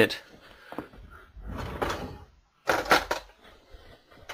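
Off-camera handling noise: a rustle with a low rumble, then a few sharp knocks about three seconds in.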